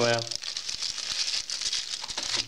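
Clear plastic packaging bags crinkling as the silicone phone cases sealed inside them are handled, a continuous rustle of many small crackles.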